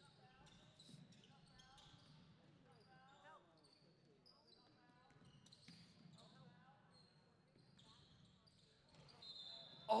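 Faint sounds of basketball play in a gym: a ball being dribbled, short high squeaks of sneakers on the hardwood court, and distant players' voices.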